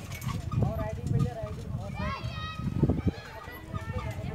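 Outdoor crowd voices and children playing, with a child's high rising cry about two seconds in, over irregular low thumps.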